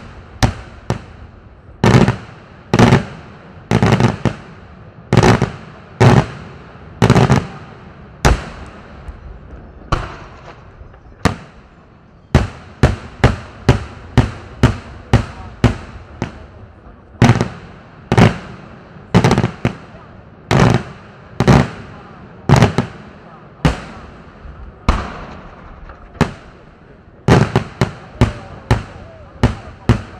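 Aerial firework shells bursting overhead in a daytime display: a long run of loud bangs, about one to two a second, each trailing off in an echo, quickening into a rapid string near the end.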